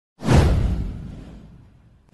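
Whoosh sound effect for an animated intro: a sudden rushing swell with a deep low end, fading away over about a second and a half.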